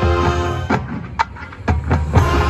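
Marching band playing live in a stadium: a sustained chord cuts off about 0.7 seconds in, and a few sharp percussion hits follow in the gap, one with a short ringing tone.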